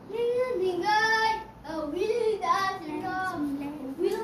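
A child singing in short melodic phrases, with a brief break about one and a half seconds in.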